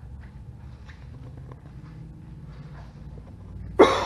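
Low steady room hum with a few faint ticks, then a man clears his throat sharply near the end.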